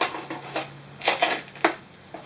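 Orange plastic Nerf dart magazines being pushed into and shifted in the nylon magazine pouches of a chest rig: a few plastic knocks and fabric rustles, with a sharp click about one and a half seconds in.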